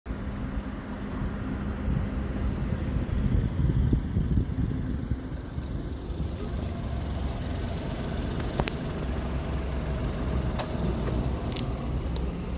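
Car engine idling as a steady low rumble with a faint hum, swelling a little a few seconds in. A few sharp clicks come near the end.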